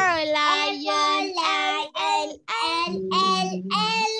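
A child's voice singing an alphabet song in short phrases with long held notes, with brief breaks between phrases.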